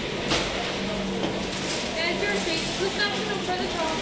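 Background chatter of several voices in a busy fast-food restaurant, over a steady low hum, with a brief click about a third of a second in.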